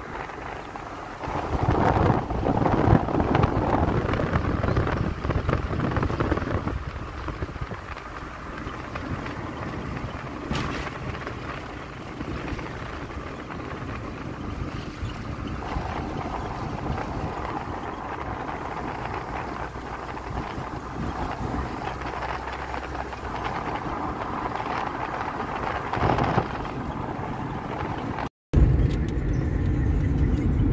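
Road and wind noise in a moving car: a steady rumble of tyres with wind over the car, louder for a few seconds early on and briefly cut off near the end.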